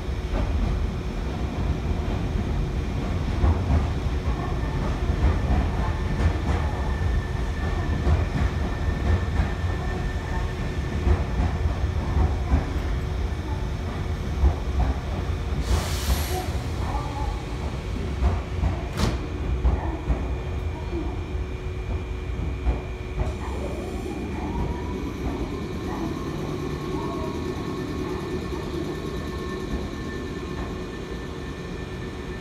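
Nankai Railway commuter train pulling into the platform and slowing to a stop, its wheels rumbling and clacking over the track. There is a short hiss about halfway through, a sharp click a few seconds later, and a whine near the end as the train comes to rest.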